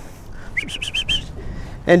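A small bird singing a quick run of about six short, rising chirps, faint against the outdoor background.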